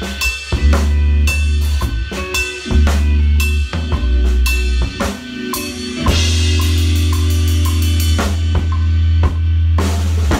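Acoustic drum kit (Yamaha Recording Custom drums, Meinl Byzance cymbals) played with sticks in a groove of kick, snare and cymbals over a backing track with bass, picked up on a phone's microphone. A crash cymbal rings out from about six seconds in, and the piece ends on a last hit right at the end.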